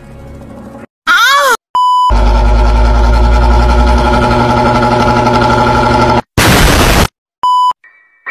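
A string of edited-in meme sound effects: a quick warbling sweep, a short pure censor beep, then about four seconds of a very loud held buzzing chord with heavy bass, a burst of static hiss, and a second censor beep.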